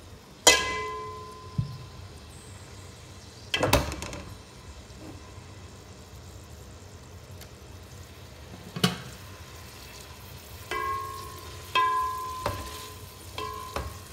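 Chopped onions frying in oil in an aluminium pot, a low steady sizzle. Several knocks and clinks of kitchenware break in, the loudest just after the start, some leaving a short ringing tone.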